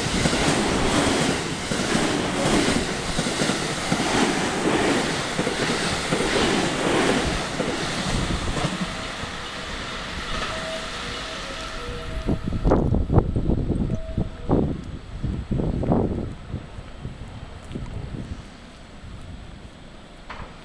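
JR West 223 series 2000 electric multiple unit running through the station at speed, a rolling roar with a rhythmic clatter of wheels over the rail joints, dying away after about twelve seconds. A few low thumps follow.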